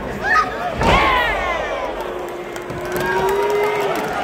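A heavy thud of a wrestler hitting the ring canvas about a second in, followed by arena crowd voices shouting, with one long held yell near the end.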